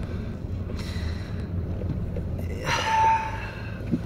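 Steady low hum of a car's engine heard inside the cabin, with a short breath from the man at the wheel about three seconds in.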